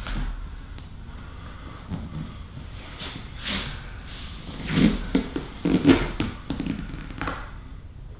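A person breathing hard under another person's body weight: a breathy exhale about three and a half seconds in, then a louder cluster of strained breaths with soft thuds and clothing and cushion rustle around five to six seconds in.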